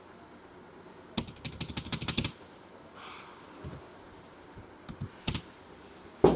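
Computer keyboard typing: a quick run of about a dozen keystrokes about a second in, then a couple more clicks near the end.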